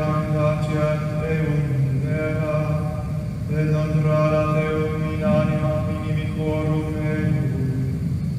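Men's voices chanting Latin plainchant, holding long notes that move slowly in pitch, in phrases of a few seconds with short breaks between them.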